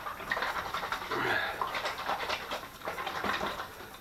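Sugar water sloshing unevenly inside a 2-litre plastic bottle shaken by hand to dissolve the sugar.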